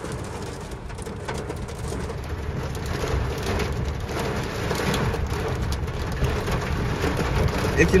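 Heavy rain beating on a moving car's windscreen and roof, heard from inside the cabin, growing steadily louder, over a low road rumble.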